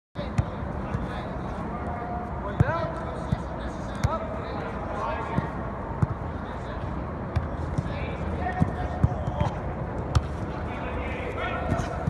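Soccer balls being kicked and bouncing on artificial turf: sharp thuds at irregular intervals, roughly one a second, with children's voices in the background.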